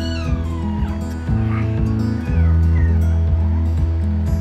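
Background music, with a teacup poodle puppy's high whines over it: a long one falling in pitch in the first second, then a few shorter rising and falling ones.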